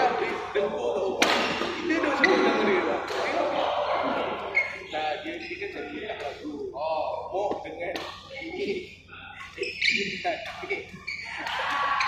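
People talking in a large, echoing sports hall, with a few sharp knocks.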